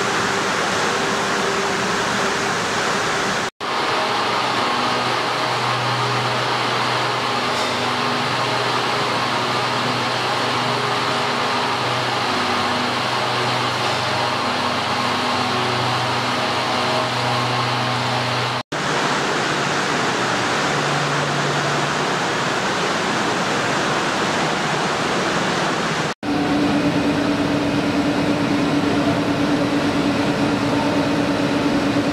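Textile mill machinery running: a loud, steady mechanical noise of spinning frames with a low hum. It is broken by three abrupt cuts, and after the last one a steadier low tone comes in.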